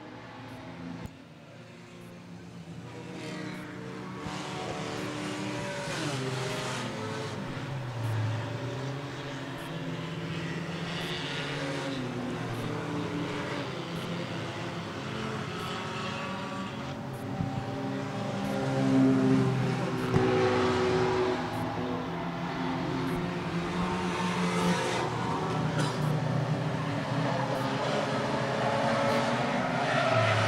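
A field of enduro race cars running laps of an oval track, their engines rising and falling in pitch as they come through. The sound grows louder from about two seconds in as the pack approaches.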